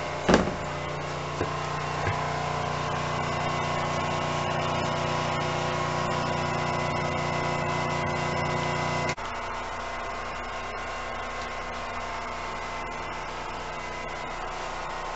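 Steady low mechanical hum inside a diesel railcar, its engine running evenly, with a knock just after the start. About nine seconds in the hum cuts off abruptly, leaving a quieter, steady background hum.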